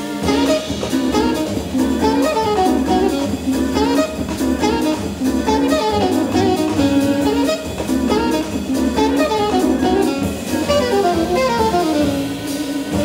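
Jazz quartet playing live: a saxophone carries a moving melody over Hammond organ, double bass and drum kit, with steady cymbal strokes.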